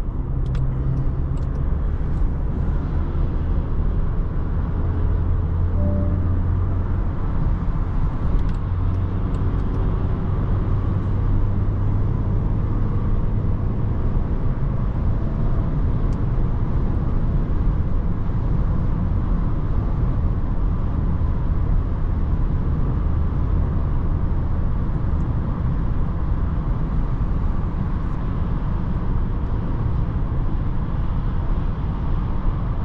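Steady road and tyre rumble heard inside the cabin of a 2024 Range Rover Evoque cruising at motorway speed, with a low hum from its 2.0-litre four-cylinder petrol engine.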